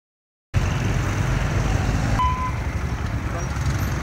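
Silence, then from about half a second in a steady low rumble of motorcycle engines running close by, with road traffic.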